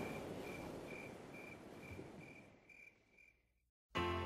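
The fading ambient tail of a background music track: a noisy wash dying away, with a short high chirp repeating about twice a second. It drops to a moment of silence just before the end.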